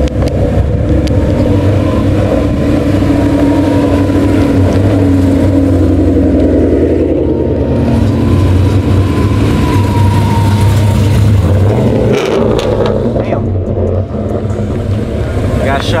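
Performance car engines running with a deep steady rumble as cars roll slowly at low revs, a steady tone riding over the exhaust note.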